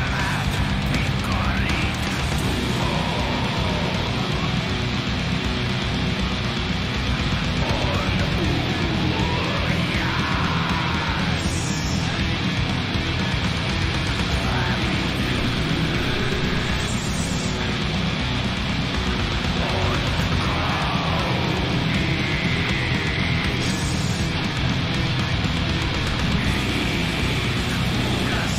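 Black and doom metal song playing: a dense, continuous wall of distorted music under harsh vocals that are extremely brutal and evil, with the guitars mixed low.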